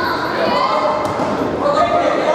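Voices calling out in a large hall during an amateur boxing bout, with dull thuds from the boxers exchanging punches and moving on the ring canvas.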